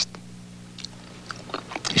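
Soft lip smacks and mouth clicks of someone tasting food, a few short ones spread through the two seconds, over a faint steady hum.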